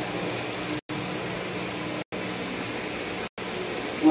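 Steady background noise with a faint low hum, like a room fan or air conditioner, broken by brief total dropouts about once a second.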